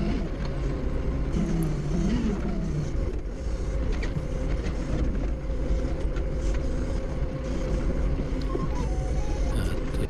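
A Doosan 4.5-ton forklift's engine idling steadily, heard from inside the cab, with a constant low rumble and a steady hum.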